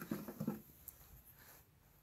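Faint handling noises from a clear plastic blister pack as a router bit is taken out of it, with a small click about a second in; otherwise quiet.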